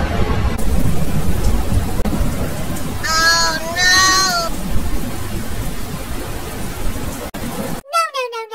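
Thunderstorm sound effect: steady heavy rain over low rumbling thunder. About three seconds in, two short pitched calls, the second bending up and then down, are laid over the storm.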